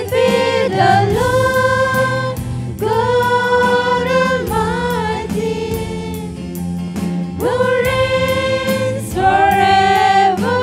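Live gospel worship song: a group of young women singing together into microphones, holding long notes, over electric bass guitar and acoustic guitar.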